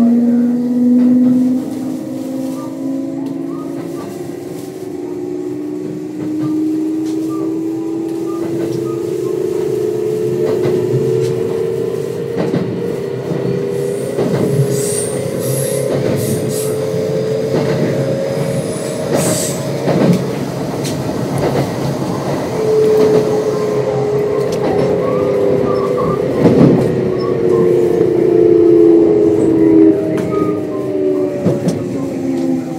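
Kintetsu 1026 series train's Hitachi GTO-VVVF traction inverter heard from inside the car: a motor tone that climbs slowly in pitch as the train gains speed, with high wheel squeal on curves midway. Near the end a new tone falls in pitch as the train brakes for the next station.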